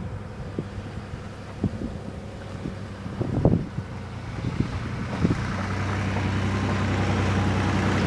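A vehicle engine running with a steady low hum that grows louder and fuller about five and a half seconds in, with wind buffeting the microphone and a few short thumps in the first half.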